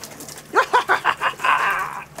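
A man laughing: a quick run of about six short 'ha' bursts, each rising in pitch, trailing into a longer breathy exhale.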